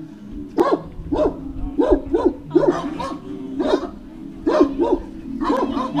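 Dog barking repeatedly, about two barks a second in short runs, with a brief pause midway.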